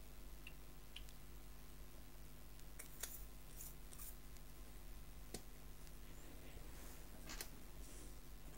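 Faint, scattered small clicks and taps of a plastic technical pen and its ink bottle being handled as the pen is refilled and put back together, over a low steady hum.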